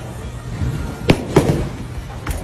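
Bowling ball landing on and bouncing along the wooden lane: two sharp knocks about a third of a second apart, over steady background music.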